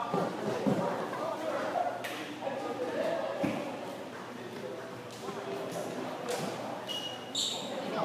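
Teenagers' voices chatting and calling in a large, echoing gym hall, with a few thuds and a brief high squeak near the end.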